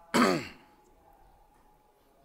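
A man clears his throat once, a short sound falling in pitch about a fifth of a second in.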